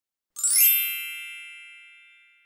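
A bright chime sound effect: a quick upward sweep that opens into a ringing shimmer of several high tones, fading away over about two seconds.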